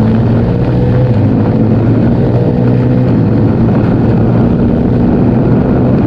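Husqvarna Norden 901's 889 cc parallel-twin engine running steadily while the bike cruises on the road, its note holding nearly constant. The exhaust is subdued, tuned civilised rather than loud.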